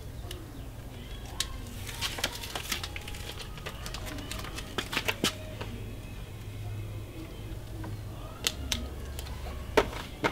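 Scattered clicks and paper crackle of a sticker being peeled from its backing and pressed onto a mini-fridge door, over a steady low background hum.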